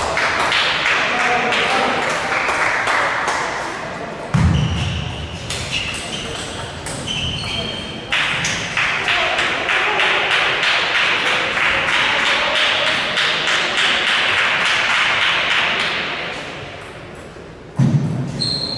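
Celluloid table tennis balls clicking off tables and bats at neighbouring tables in a sports hall, many sharp ticks in a row, with voices around them.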